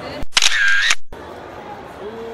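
A camera-shutter sound effect edited in at a cut: one loud, high-pitched sound lasting under a second, set in a brief gap of dead silence.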